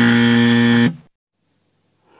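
Wrong-answer buzzer sound effect: one steady, low, harsh buzz lasting just under a second, marking an incorrect match.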